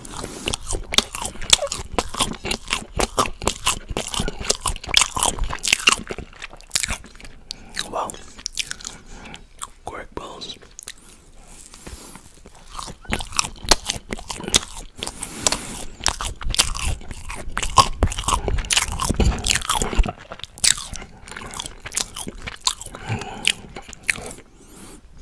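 Close-miked chewing and loud wet mouth smacking on a soft, sugar-dusted fried quark ball, with bites and lip smacks coming in quick, irregular succession. A sparser stretch falls near the middle before the chewing picks up again.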